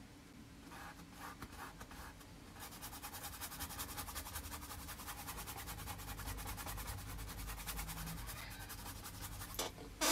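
Paintbrush scrubbing oil paint onto a canvas: a few separate strokes at first, then quick, steady back-and-forth scrubbing from about two and a half seconds in until shortly before the end.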